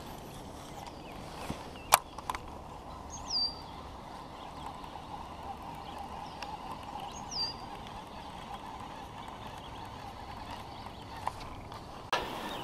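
Quiet pond ambience with a faint steady hiss, a single sharp click about two seconds in, and two short, high, downward-sliding bird whistles, at about three and seven seconds in.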